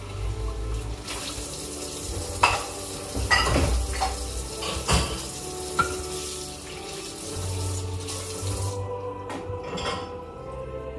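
Kitchen tap running into a sink while dishes are washed by hand, with several sharp clinks of dishes knocking together. The running water stops near the end.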